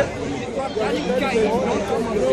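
Chatter: other people talking, their voices overlapping.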